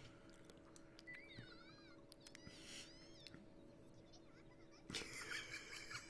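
Near silence: room tone with a faint steady hum, and a few faint, high, gliding squeaks between about one and three seconds in.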